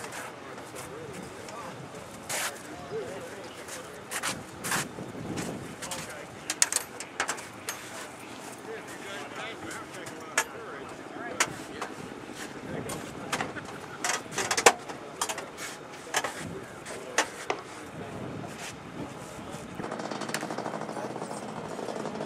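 Irregular sharp clicks and knocks, loudest around the middle, over a steady outdoor background hiss, with faint voices.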